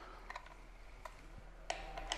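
A few faint clicks and light knocks as a dial torque gauge is handled and fitted onto a test fixture, the loudest a little before the end.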